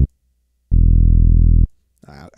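A virtual bass instrument in the DAW sounds a single low, steady note lasting about a second. The note is auditioned by clicking the piano roll's keyboard to choose the octave for the bass line. A previous note cuts off right at the start.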